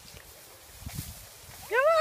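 A woman's high, sing-song call to a dog ("Come") near the end, after a quiet stretch with only a few faint low thumps.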